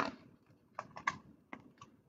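A picture-book page being turned by hand: a handful of short, faint clicks and rustles over about a second.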